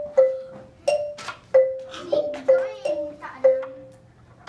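Wooden Orff xylophone played with a mallet: a slow improvised phrase of about seven notes stepping back and forth between two neighbouring pitches, each bar ringing briefly after it is struck.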